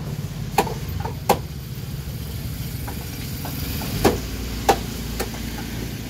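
Sharp knocks of a large machete-like knife chopping through marlin loin onto a wooden chopping block: five strikes, two in the first second and a half and three more from about four seconds in. Under them runs a steady low engine-like rumble.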